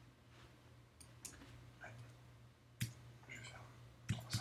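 A few faint clicks from a computer mouse and keyboard, one sharper near three seconds in, over a low steady hum.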